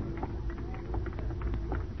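Radio-drama sound effect of hurried footsteps, sharp irregular steps a few times a second over a low rumble, as the organ music bridge dies away at the start.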